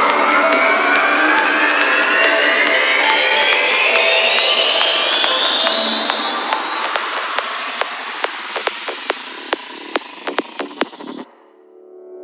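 Psytrance build-up: a noisy synth riser sweeps steadily upward in pitch over about nine seconds with the bass filtered out, over a percussion roll whose hits come faster and faster. About eleven seconds in it cuts off suddenly, leaving a quiet held synth chord just before the drop.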